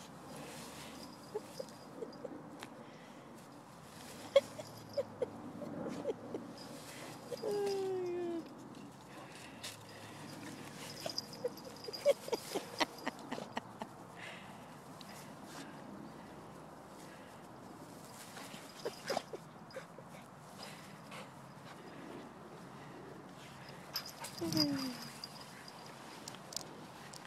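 Dog rubbing and rolling in wet grass on a leash: scattered rustles and clicks, with a short falling call about eight seconds in.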